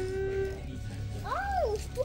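Eerie, wailing spooky sound effect: a held note, then a long swoop that rises and falls back in pitch, like a ghostly moan or cat-like yowl from Halloween decorations.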